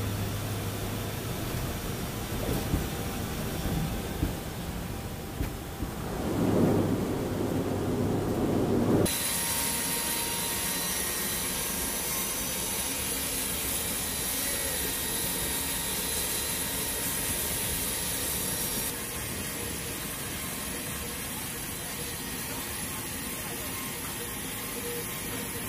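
Propeller-driven transport aircraft heard from inside the cockpit on a runway: a steady engine drone that swells louder about six to nine seconds in. After an abrupt change, steady aircraft noise with a high thin whine runs beside the open cargo ramp, and the whine drops away in the last few seconds.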